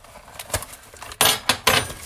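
A flower bouquet being cut and handled out of its paper wrapping: a few short crackling, rustling bursts, the two loudest a little past one second in and near the end.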